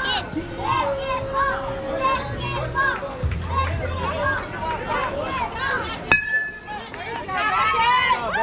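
Kids and adults calling out around a youth baseball field. About six seconds in, a single sharp metallic ping of an aluminum bat hitting the ball, ringing for about half a second, followed by a burst of shouting.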